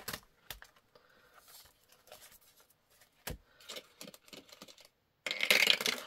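Banknotes being handled and tucked into plastic binder pockets: faint paper rustling with a few light clicks. Near the end comes a sudden, louder clatter of dice being rolled.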